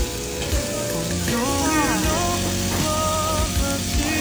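Slices of pork belly sizzling and frying on a hot grill pan, a steady crackling hiss, with background music laid over it.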